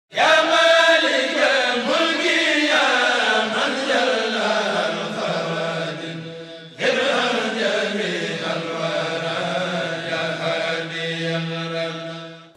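Chanted vocal intro jingle: loud, sustained chanting voices over a steady low drone, in two long phrases. The first fades away, and the second starts suddenly about seven seconds in.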